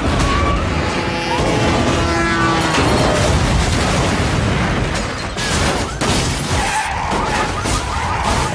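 Disaster-film sound mix of a city collapsing in an earthquake: a car engine and screeching, sliding tones at first, then a run of crashes and booms of falling concrete and debris over a constant rumble, with music underneath.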